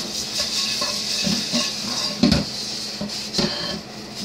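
Stiff plastic brush scrubbing the outside of a hot pot, rasping at baked-on grime loosened by oven cleaner, with a few knocks of the pot against the stainless steel sink.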